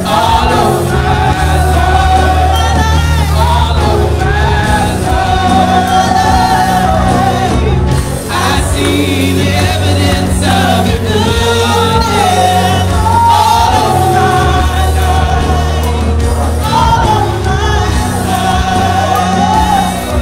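Gospel worship song performed live: several voices singing into microphones over accompaniment with a steady bass line.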